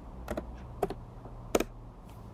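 Computer keyboard keystrokes: a few separate key presses, some in quick pairs, as a number is typed in.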